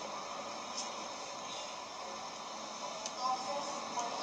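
Steady background hiss with no handling sounds standing out, and a brief faint voice about three seconds in.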